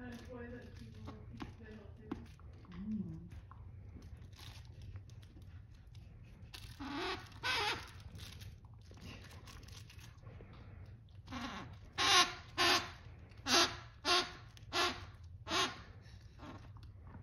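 Squeaker inside a plush toy squeaking as a greyhound bites down on it. Two squeaks come about seven seconds in, then six in quick succession near the end, the loudest of the run.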